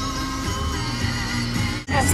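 Background music with sustained notes, dropping out briefly near the end.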